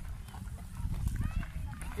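Indistinct voices of several people talking, over a steady low rumble of wind on the microphone.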